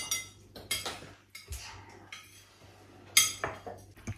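Metal forks and cutlery clinking against ceramic dinner plates as people eat: a handful of irregular sharp clinks, the loudest a little after three seconds in.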